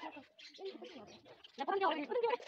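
Girls' voices chattering indistinctly, loudest near the end.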